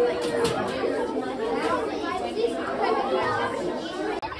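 Many children's voices chattering at once in a crowded school hallway.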